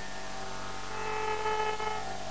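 Steady electrical mains hum on a Carnatic concert recording, with a faint held musical note coming in about a second in.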